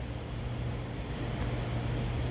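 Steady mechanical hum with a low drone and an even hiss, unchanging throughout, with no distinct clicks or knocks.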